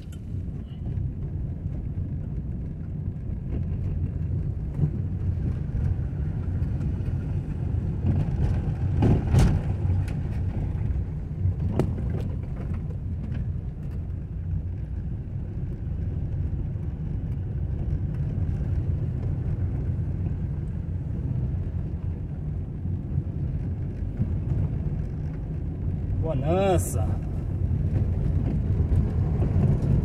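Car driving on an unpaved, rutted dirt road, heard from inside the cabin: a steady low rumble of engine and tyres on the rough surface, with a couple of knocks from bumps about nine and twelve seconds in.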